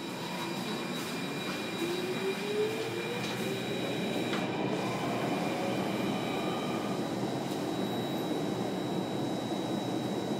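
SMRT Circle Line C830 (Alstom Metropolis) metro train pulling away and accelerating, heard from inside the carriage. Its traction motor whine rises steadily in pitch over several seconds above the rumble of wheels on rail, with a thin steady high tone throughout.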